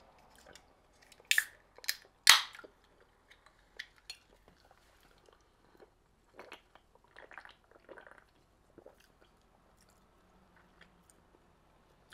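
An aluminium can of Clear American limeade being cracked open: a couple of small clicks from the tab, then a sharp pop about two seconds in. Several seconds later come softer sounds of gulping and swallowing as the drink is drunk from the can.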